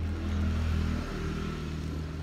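A motor vehicle's engine running, heard as a low, steady hum that is loudest in the first second and eases after it.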